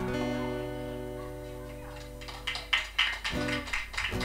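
A final chord strummed on an acoustic guitar, ringing out and slowly fading. About two seconds in, scattered hand clapping from a small audience starts.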